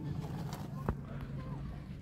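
Quiet background: a steady low hum with a single sharp click a little under a second in.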